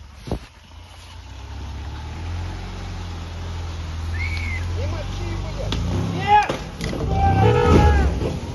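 UAZ off-road vehicle's engine running and growing louder as it drives up onto a log bridge, then revving under load. A sharp knock comes about six seconds in, with men's voices calling out near the end.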